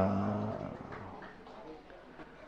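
A man's voice trailing off on a held low syllable, then fading to quiet room tone.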